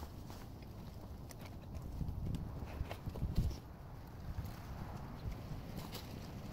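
Scattered light clicks and knocks of plastic tubing and a glass jar being handled and hung at a tree tap, over a low steady rumble.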